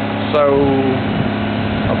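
Steady low hum of a small engine running, under a man's voice saying a single word.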